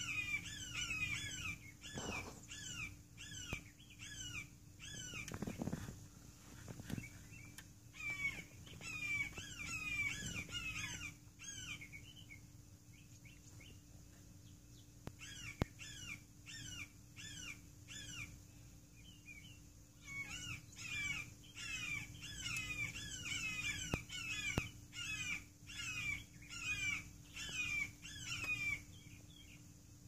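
Hawks squawking: a rapid series of short, harsh, downward-sliding calls, two or three a second, in long bouts with a pause of a few seconds near the middle.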